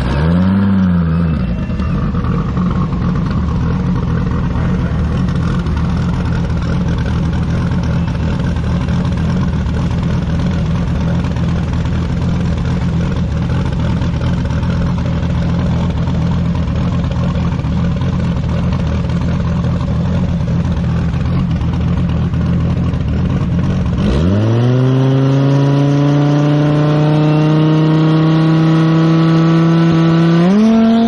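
Turbocharged Dodge Viper V10 drag car idling steadily, with a short rev blip at the start. About 24 s in, the revs climb quickly and are held at a steady, higher pitch, stepping up again at the very end as the car builds revs on the starting line for its launch.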